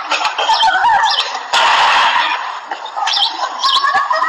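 Outdoor birdsong: short, high chirps throughout. About a second and a half in there is one sudden half-second burst of noise.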